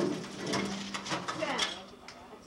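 People talking and reacting at a dinner table, with a few sharp clicks and a steady low hum underneath.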